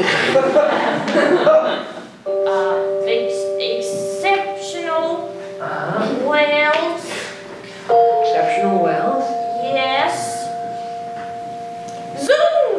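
Held keyboard chords: one chord starts suddenly about two seconds in and changes to another about eight seconds in, with a voice over them.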